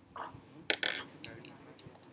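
A quick run of about five small, sharp clicks and clinks, as of hard objects being handled, the loudest pair just under a second in.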